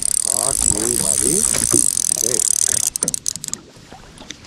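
Spinning reel whirring with a fast ticking while a heavy fish is played on a bent rod. It stops abruptly about three seconds in, followed by a few clicks.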